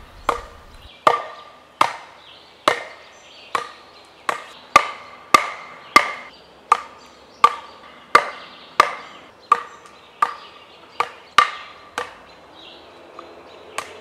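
A 2x4 striking the spine of a camp knife to baton it down into a hardwood limb: about seventeen steady blows, each hit leaving a short ring, stopping about three seconds before the end. The log does not split and the blade ends up stuck.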